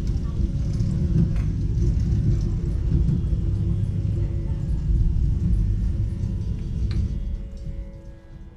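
A low, noisy rumble that drops away near the end, with faint steady tones underneath.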